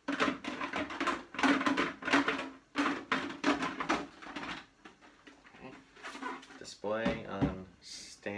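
A man's voice, partly muffled and not clearly worded, over the knocks and rubbing of a hard plastic helmet being turned and set down on its stand.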